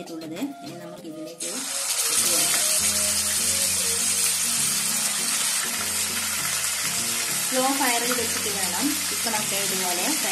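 Marinated chicken pieces sizzling steadily in hot oil in a frying pan as they are shallow-fried; the loud sizzle starts suddenly about a second and a half in as the chicken goes into the oil.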